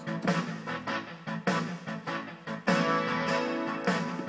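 Guitar music: an instrumental passage of plucked notes that ring on between attacks.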